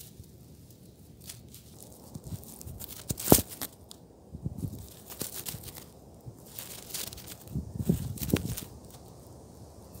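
Dry grass and leaves rustling and crackling close to the microphone, with irregular clicks and knocks, the sharpest about a third of the way in.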